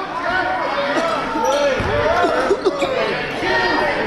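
Basketball shoes squeaking again and again on a hardwood gym floor as players cut and slide, with a basketball bounce about two seconds in.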